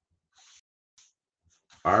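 Near silence with a couple of faint, brief sounds, then a man's voice starts speaking near the end.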